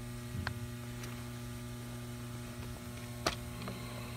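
Steady electrical mains hum, with a faint click about half a second in and a sharper click just past three seconds as the charger's 3-pin XLR plug is pulled from the battery's charging port and handled.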